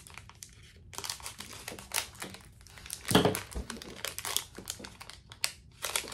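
Small clear plastic packaging bag crinkling as it is handled and opened, in irregular rustles, loudest about three seconds in.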